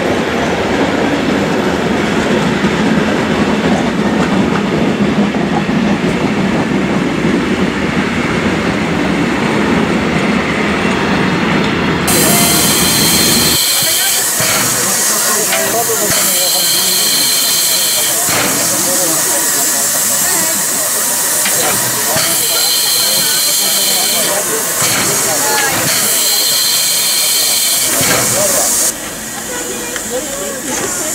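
Carriages of a steam-hauled train rolling past on the rails with a steady rumble. From about twelve seconds in, the Ty2 class 2-10-0 steam locomotive stands close by, hissing steam loudly, with a higher ringing tone in the hiss that comes and goes several times. The hiss drops in level near the end.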